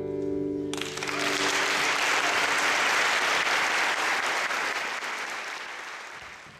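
The final chord of an acoustic guitar rings out, then less than a second in an audience bursts into applause, which carries on steadily and fades out near the end.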